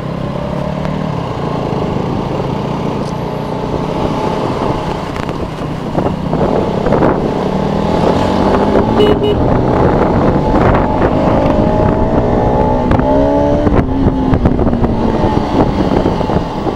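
Motorcycle engine running at road speed under a steady rush of wind and road noise. About halfway through, the engine note climbs steadily for several seconds as the bike accelerates, then eases off near the end.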